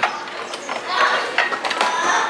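A few sharp clicks and knocks from the levers and arm of a ride-on play excavator being worked by hand, over background chatter in a busy room.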